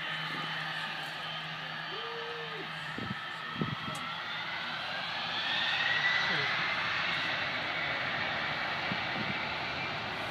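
Distant jet engines of a cargo airliner running at takeoff power: a steady rushing noise with a high whine that rises in pitch and swells about halfway through.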